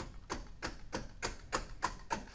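A quick, fairly even series of light clicks or taps, about four a second.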